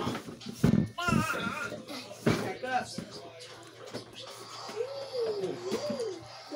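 Voices and music in the background, with a wavering sung or spoken line near the end, and a few sharp clicks in the first few seconds.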